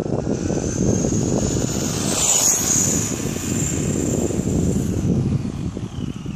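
Traxxas Rustler RC truck's electric motor and gearbox whining at high pitch as it drives past at speed. The whine rises, peaks and drops in pitch about two and a half seconds in, then fades near the end. A steady low rumble runs underneath, and the owner thinks the gearbox needs replacing.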